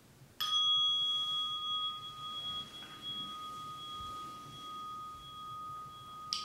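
A meditation bell struck once about half a second in, ringing on with two steady tones that slowly fade. It marks the end of the sitting period.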